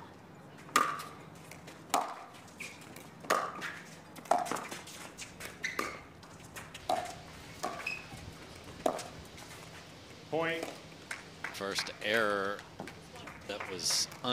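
Pickleball paddles striking the hard plastic ball in a rally: about eight sharp pops, roughly one a second, each with a short ping. Near the end come voices, calling out as the point ends.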